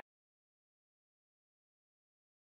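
Near silence: the sound track drops out completely.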